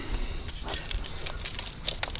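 A few light metallic clicks and rattles from hands handling a diesel engine's fuel shutoff solenoid and its linkage.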